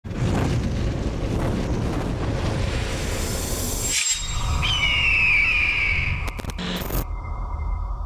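Cinematic logo-sting sound effects: a deep rumbling whoosh that swells and breaks off about four seconds in. Then a boom-like rumble under a slowly falling whistle, with a few short glitchy clicks near the end.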